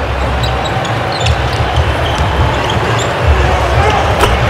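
Basketball game sound from the court: a ball being dribbled on a hardwood floor, heard as faint scattered ticks over a low, steady arena rumble.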